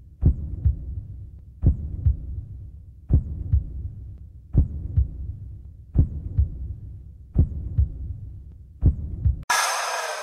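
Heartbeat sound effect: a low double thump, lub-dub, repeating seven times about every one and a half seconds. A song with singing cuts in about nine and a half seconds in.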